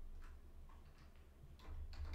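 Faint, scattered ticks and taps of playing cards and token cards being set down on a table, over a steady low hum.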